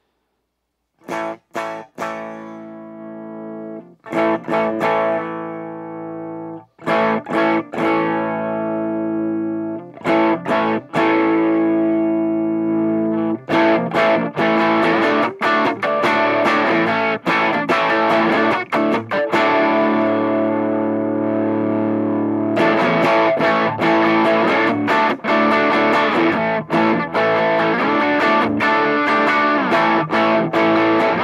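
Electric guitar on its bridge pickup played through an MXR Timmy overdrive pedal on its middle clipping-diode setting, during a sweep of the gain. It starts with chords left to ring with short gaps, then turns to continuous, busier playing from about thirteen seconds in, and the tone grows brighter and more distorted as the gain comes up.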